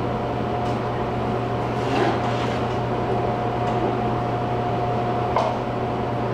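A steady mechanical hum with a thin constant tone over it, the ongoing background noise of the shop, broken by a few faint soft knocks.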